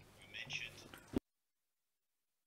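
A faint, breathy whispered voice sound on a microphone, then a short click just after a second in, after which the audio drops to dead digital silence as the microphone is gated or muted.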